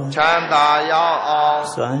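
An elderly Buddhist monk's voice chanting into a microphone, with long, evenly held notes in a slow, sing-song recitation.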